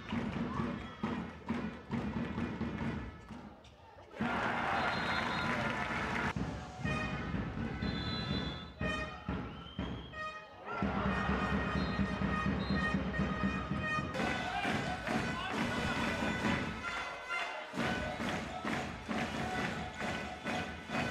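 Music mixed with voices and repeated thuds, as heard in a handball arena during play. The music breaks off and changes abruptly several times.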